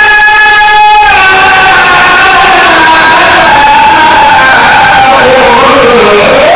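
Qur'an recitation with tajweed: one man's voice through a microphone holding a long ornamented note. The note is held level for about a second, then slides and wavers in pitch.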